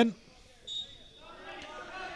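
A single short blast of a referee's whistle, faint and steady, a little over half a second in, signalling the restart of play for the free. Faint open-ground ambience lies under it.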